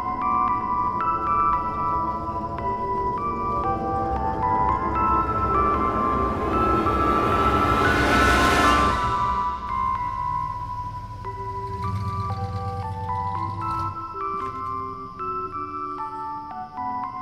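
Ice cream truck's chime jingle playing a tinkling bell-like melody. The truck passes close about eight seconds in, as a swelling rush of engine and tyre noise that peaks and then falls away while the jingle plays on.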